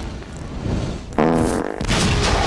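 Movie sound effects: a low rumble, then a sudden pitched fart blast lasting about half a second, the sheep methane that ignites, and the start of an explosion right at the end.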